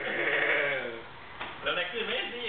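A person's voice held for about a second with a quavering, wavering pitch, followed by more talk near the end.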